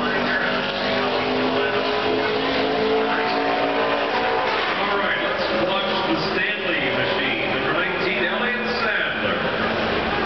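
NASCAR Cup stock car's V8 engine running at speed on a lone qualifying lap. Its steady tone is strong for the first few seconds, then fades as the car moves away, with voices over it.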